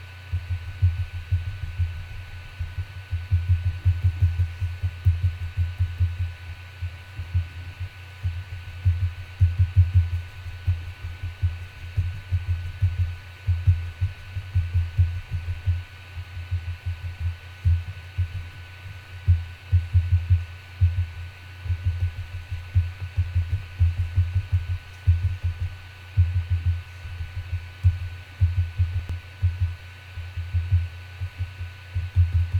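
A paintbrush dabbed repeatedly onto a craft surface, stippling paint onto paper leaf shapes: dull, irregular low taps in quick runs with short pauses.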